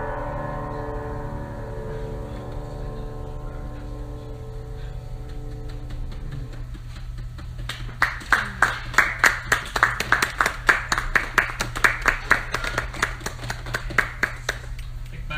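A grand piano's final chord ringing and slowly dying away, then a small audience clapping, starting just before eight seconds in and lasting to the end.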